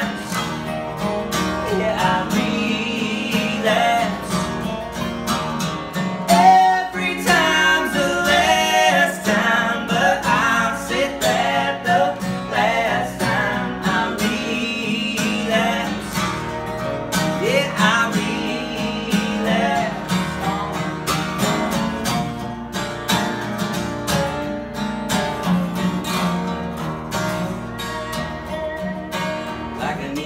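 Two acoustic guitars playing a country song, strummed and picked, with a melody line of bending notes carried over them in the middle stretch.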